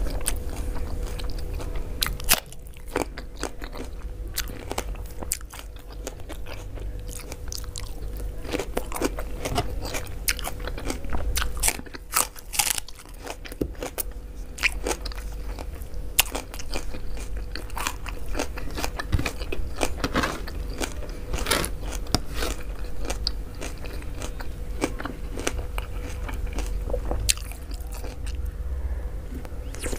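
Close-miked chewing and mouth sounds of a person eating handfuls of mansaf rice with yogurt sauce, with frequent irregular wet clicks and smacks. A faint steady hum runs underneath.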